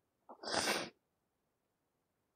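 A single short, sharp burst of breath noise from a person about half a second in, with a brief lead-in and lasting about half a second.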